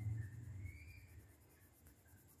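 Colored pencil rubbing on paper as a line is drawn: a faint scratchy stroke that fades after about the first second.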